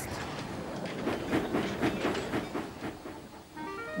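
A train running along the track, its wheels clicking irregularly, the sound fading away in the last second. A few soft music notes come in near the end.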